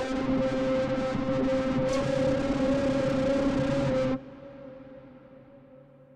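Synthesizer music from the Waldorf Largo software synth playing back in a cinematic track: a held, pitched note over a dense texture that stops sharply about four seconds in, leaving a reverb tail that fades away.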